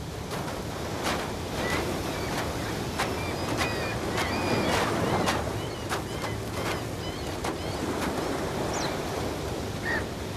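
Sea waves washing on the shore in a steady rush, with short high bird calls chirping on and off throughout.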